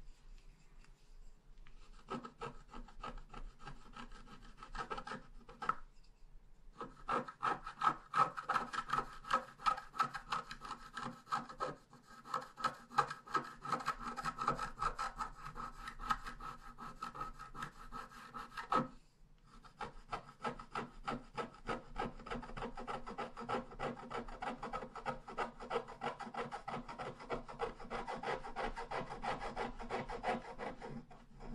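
Wooden stylus scratching the black coating off scratch-art paper in rapid short strokes, starting about two seconds in, with brief pauses about six and nineteen seconds in.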